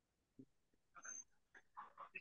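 Near silence, with a few faint breath-like noises about a second in and again near the end.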